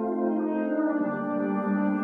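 Wind band playing slow, held chords in a reverberant concert hall; a lower note joins about halfway through.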